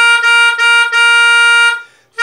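Melodica playing a hymn melody: one note sounded four times in a row, the last held about a second, then a short breath pause near the end.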